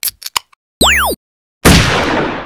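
Synthesized intro-title sound effects: a few quick clicks, a short electronic zap of pitches sliding up and down across each other, then a loud sudden hit with a noisy tail that fades away over about a second.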